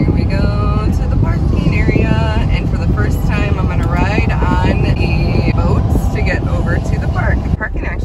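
Car driving at highway speed, heard inside the cabin: a steady rumble of road and engine noise with a person's voice over it. The rumble drops quieter near the end as the car slows.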